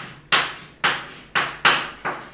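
Chalk writing on a blackboard: about five sharp taps in two seconds, each dying away quickly.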